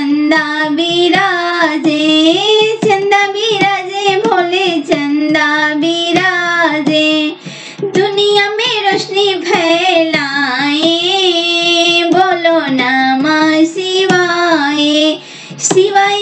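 A high solo female voice singing a Bhojpuri Shiv vivah geet, a folk wedding song about Shiva's marriage, in a wavering, melismatic line. There are two short breaks for breath, about seven and a half and fifteen seconds in.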